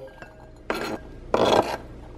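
A chef's knife scraping diced onion across a plastic cutting board into a glass bowl: two scraping strokes, a short one under a second in and a longer one around the middle.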